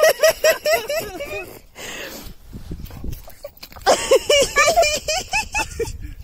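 A dog yipping and whining in quick high-pitched runs, one run at the start and another about four seconds in.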